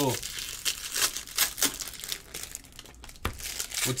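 Foil trading-card pack wrappers crinkling and rustling in irregular bursts as packs are handled and opened by hand, with a single light knock a little before the end.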